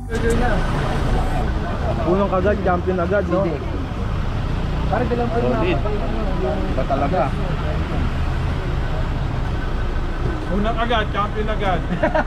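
Several people talking casually over the steady low rumble of road traffic.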